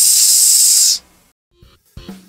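A loud hissing noise-burst transition effect lasts about a second and cuts off abruptly. After a brief gap, the first drum hits of the outro music come in near the end.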